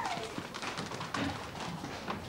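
A group of children running on paving: a quick patter of many footsteps, with faint voices under it.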